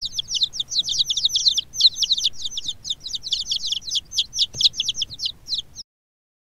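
Domestic chicks peeping: a rapid run of short, high cheeps sliding downward in pitch, several a second, which stops abruptly just before the end.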